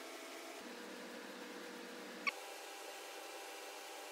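Faint steady hiss and hum of room tone, with one short, sharp click a little over two seconds in.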